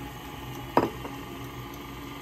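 KitchenAid stand mixer's motor running steadily, its flat beater whipping eggs, sugar and oil in the steel bowl. A short sharp sound cuts in once, less than a second in.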